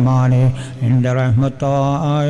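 A man chanting an Islamic supplication (dua) in long held notes, broken by two short pauses.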